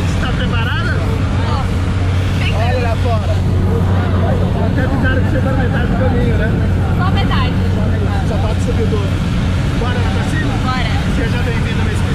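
Steady drone of a small jump plane's engine and propeller, heard inside the cabin in flight, with people's voices talking over it.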